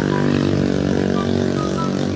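A small engine running steadily, with a few faint short high notes over it.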